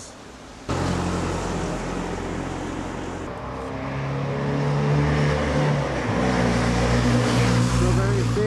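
A motor vehicle's engine running close by in the street, with the hiss of traffic. It starts abruptly just under a second in and grows louder from about halfway through, its pitch shifting as if changing speed.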